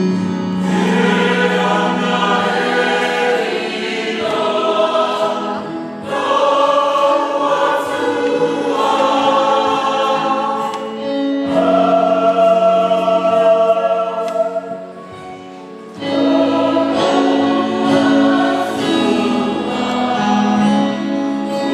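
Mixed choir of men and women singing a Samoan hymn in full harmony, in long sustained phrases. The singing drops away briefly about fifteen seconds in, then comes back at full strength.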